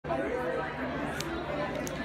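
Indistinct chatter of several voices talking at once in a room.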